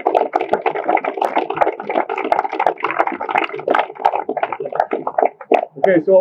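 A group of people applauding: many hands clapping together, thinning to a few separate claps near the end.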